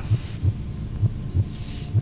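Heartbeat-style suspense sound effect: low thumps, about two or three a second, holding the tension before a contestant's result is announced.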